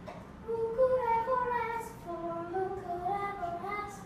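A young girl singing a slow melody solo, in two sung phrases.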